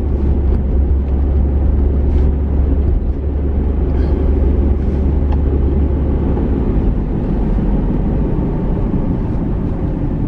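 Steady low rumble of road and engine noise inside the cabin of a moving car. The deepest part of the rumble eases a little about seven seconds in.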